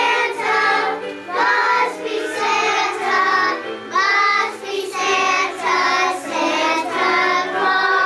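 A class of young children singing a Christmas song together in unison, over an instrumental accompaniment with a stepping bass line.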